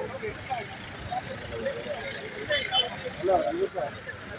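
Voices talking over steady street traffic noise.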